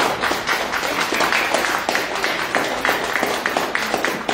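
A congregation applauding: many hands clapping steadily together.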